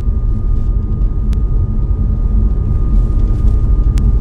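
Steady low road and engine rumble inside a moving car, picked up by a phone microphone, with a faint steady tone above it and a single tick about a second in.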